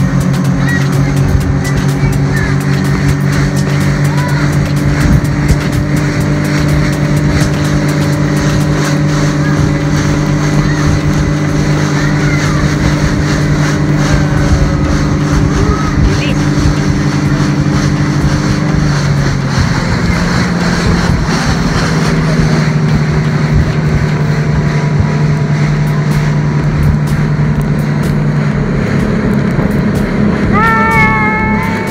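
Motorboat engine running steadily at speed, a constant drone that drops slightly in pitch about two-thirds of the way through, over rushing water and wind on the microphone.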